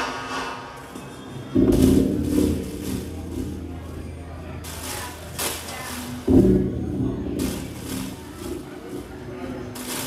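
Sparse live electronic music: two heavy low hits, about a second and a half in and again just past six seconds. After the first, a low bass note holds for about three seconds, and bursts of hissing noise come between and after the hits.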